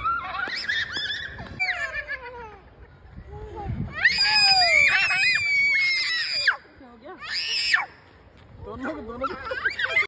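Small children's high-pitched screams and shrieks during excited play. The longest and loudest shriek runs from about four seconds in to about six and a half seconds. A shorter one follows about a second later, and more childish voices come near the end.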